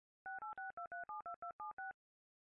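Telephone keypad touch tones dialing a ten-digit phone number: ten quick two-note beeps in rapid succession.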